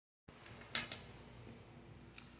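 Two sharp clicks about a fifth of a second apart, under a second in, over faint room tone.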